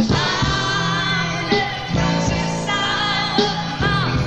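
Live rock band with a female lead vocal holding long, wavering sung notes over bass, guitar and drums: one note from the start to about two seconds in, another from about two and a half seconds in to near the end.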